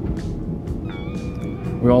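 Steady low rumble of a moving Aeroexpress electric train, heard from inside the carriage. A high held tone comes in about halfway through.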